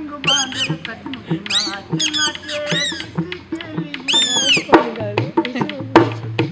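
Shrill, squeaky squawks in short rising-and-falling bursts from a kathputli puppeteer's boli, the reed whistle held in the mouth to give the puppet its voice. Under them a drum beats about twice a second.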